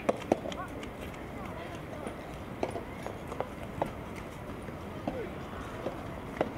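Soft tennis rally: the hollow rubber ball pocking off racket strings and bouncing on the court, several sharp pocks at uneven intervals, each with a short ringing pitch.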